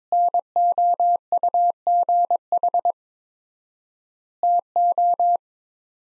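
Morse code at 22 words per minute, keyed as a single steady mid-pitched beep: a run of dots and dashes lasting nearly three seconds, a pause of about a second and a half (extra-wide word spacing), then a second, shorter word about a second long, making one two-word set.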